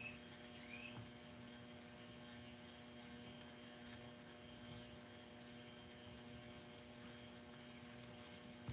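Near silence: a faint steady electrical hum, with a couple of faint short chirps in the first second.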